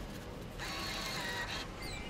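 Faint background noise of an arcade by a claw machine, a low steady din that grows a little louder about half a second in, with faint electronic tones.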